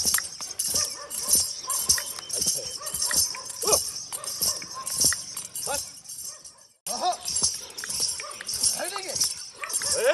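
A dancing horse stepping in rhythm to a steady, evenly repeating jingle, with short shouted calls from the men around it. The sound cuts out briefly about two-thirds of the way through, then resumes.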